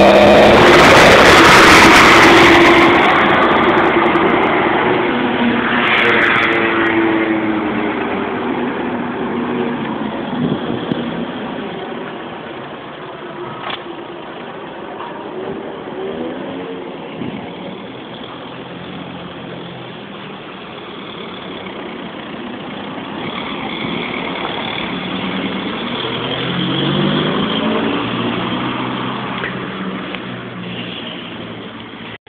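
A single-deck bus's diesel engine pulling away from the stop, loud at first, then revving up through the gears and fading as it drives off. Near the end another vehicle's engine rises in pitch as it passes.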